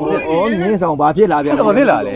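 A man speaking with wide swings in pitch; only speech is heard.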